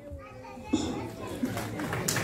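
Low murmur of children's voices in a hall, with the audience's clapping starting right at the end.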